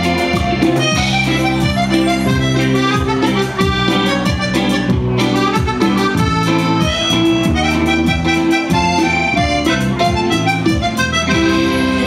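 Live cumbia band playing an instrumental passage: electric guitar, bass and percussion over a steady dance beat.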